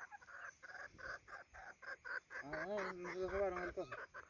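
Hens clucking in a quick run of short calls, about five a second, for the first two seconds, followed by a man's drawn-out low voice for about a second and a half.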